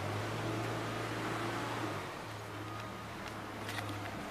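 Steady low hum with an even hiss of street background noise, dipping briefly about two seconds in.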